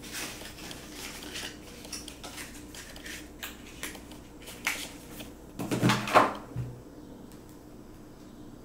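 Packaging being handled by hand: paper manuals rustling and a small cardboard box being opened, with scattered light clicks and taps. The handling gets louder for about a second around six seconds in.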